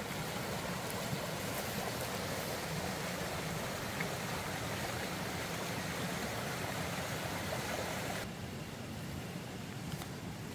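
Shallow mountain stream flowing in a ditch, a steady rush of water that turns fainter about eight seconds in.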